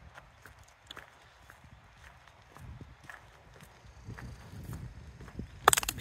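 Footsteps of a person walking along a road shoulder, soft irregular steps about two a second, with a brief loud rustle on the microphone near the end.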